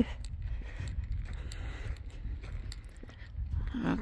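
Faint footsteps on a concrete driveway, a few soft irregular scuffs, over a steady low rumble.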